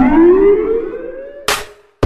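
A break in a hip-hop dance track: the beat drops out and a single siren-like tone slides upward, then holds and fades. About one and a half seconds in there is one short drum hit, followed by a moment of silence.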